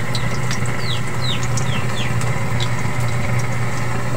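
Hot dogs sizzling in oil in a wok over a portable gas stove, over a steady low hum. A chicken peeps repeatedly through it, short falling peeps a few times a second.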